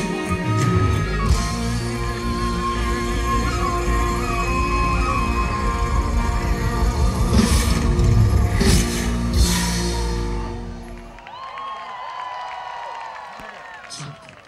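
A live rock band with electric guitar, drums and keyboards playing a song, with three loud crashes near the end before the music stops about eleven seconds in. Crowd voices follow.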